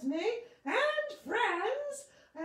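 A puppeteer's high-pitched character voice in a run of wordless, sing-song syllables, each sliding up and down in pitch, with short gaps between them.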